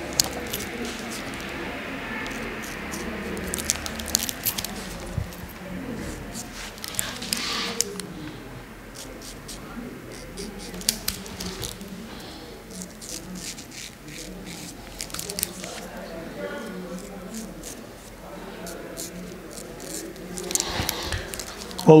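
Straight razor scraping through stubble on a lathered face, in short strokes with small sharp clicks, and soft squishing as lather is wiped off the blade.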